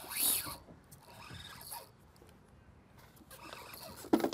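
Spinning fishing reel working as a fish is played: a short rasping burst about a quarter second in, then fainter scratchy reel sounds that fade out midway.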